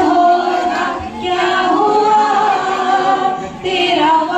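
Several women singing a song together without instruments, one voice through a microphone, as a turn in an antakshari song game.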